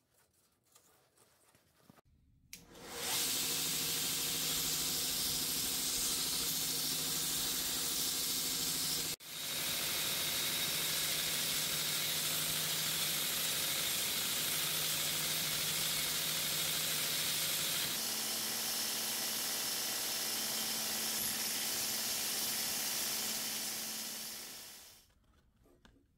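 Belt grinder starting up, its electric motor coming up to speed in about half a second, then running with a steady hiss of the abrasive belt as a block of wood is sanded against it. There is one abrupt break about nine seconds in, and the machine winds down near the end.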